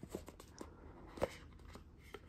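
Hands opening a cardboard tarot card box: light rustling with a few small clicks and taps of cardboard, the sharpest about a second in.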